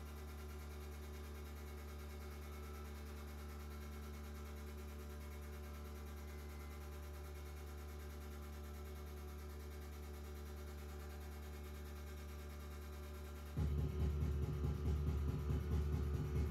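A steady low drone with a hum through a live sound system. About 13.5 seconds in, the band's music comes in louder, with heavy bass.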